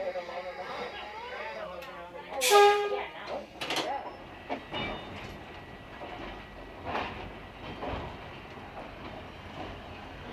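Speech, then a short blast of an electric interurban car's horn about two and a half seconds in: one steady note lasting about half a second, the loudest sound here. The car then rolls on with a low rumble and scattered clacks from the rails.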